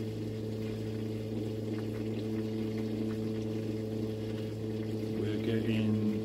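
A steady low electrical hum with several overtones, unchanging throughout.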